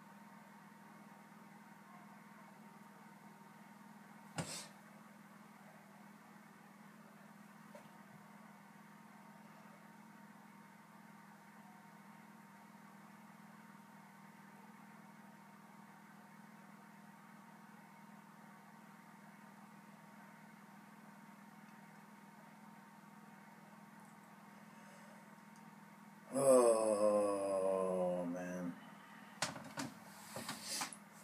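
Steady low room hum with a single tap about four seconds in. Near the end a man lets out a loud, drawn-out throaty vocal sound for about two seconds, its pitch falling.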